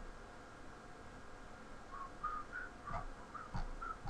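A man whistling softly, a string of short notes that step up and down in pitch, starting about halfway through.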